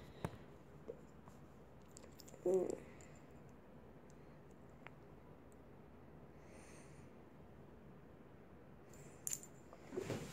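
Faint handling noise over quiet room tone: a sharp click near the start and a few small clicks later as a metal fidget spinner is held and readied in the hand.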